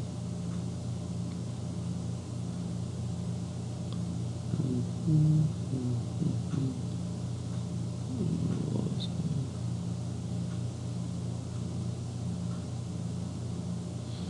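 A steady low hum with a few faint, brief murmurs near the middle.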